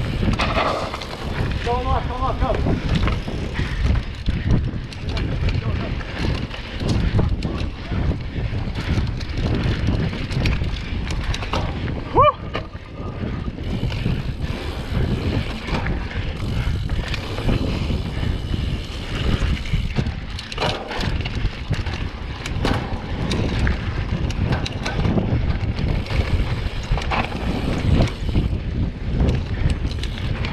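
Mountain bike riding on dirt singletrack: wind buffeting the mounted camera's microphone over the rumble of tyres on the trail, with many small clicks and rattles from the bike. There is a brief high squeak about twelve seconds in.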